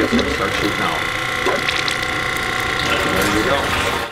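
Small electric transfer pump running with a steady whine, pumping used cooking oil through a hose into a filter bucket.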